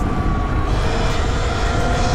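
Sur-Ron Light Bee electric dirt bike riding at speed: a steady electric drivetrain whine, creeping slightly up in pitch as the bike gathers speed, over a rush of wind and tyre noise on wet tarmac.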